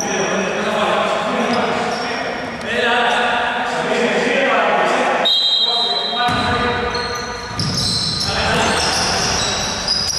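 Echoing sounds of a basketball game in a gym: players' voices calling out, a basketball bouncing on the hardwood floor, and a steady high squeak about five seconds in.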